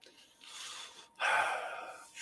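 A man breathing close to the microphone: a short, faint breath, then a louder, longer one about a second in.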